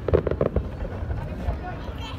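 Aerial fireworks going off, with a fast crackle in the first half second and scattered dull booms after it.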